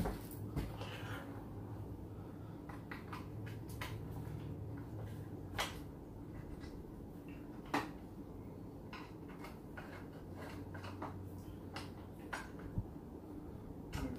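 Scattered light clicks and taps of an Allen wrench working the miter saw's metal blade-cover hardware as the cover is taken off. There is a sharper click about five and a half seconds in and another near eight seconds, and they come more often near the end. A steady low hum runs underneath.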